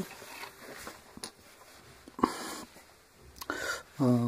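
Quiet hand-handling noise as a tablet is set down and shifted on a sheet of thick felt, with a sharp click about a second in and short breathy noises around two seconds and near the end.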